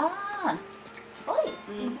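A short vocal exclamation, pitch rising then falling over about half a second, then a second brief gliding vocal sound a little over a second in, over soft background music.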